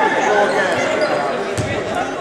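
A basketball bouncing on a hardwood gym floor, with a couple of thuds near the end, under the voices of people talking in the gym.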